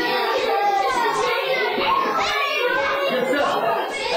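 Young children's voices, several talking at once with no clear words, in a reverberant classroom.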